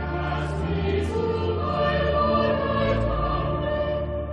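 A choir singing slow, held notes of sacred music.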